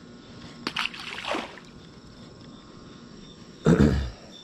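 Steady night-time insect chirring, with a throat clear about a second in and a short, loud thump near the end.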